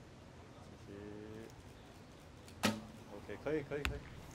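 Recurve bow shot: a sharp crack of the string as the arrow is released, with a short low ring, then a little over a second later a sharp, brief smack of the arrow striking the target.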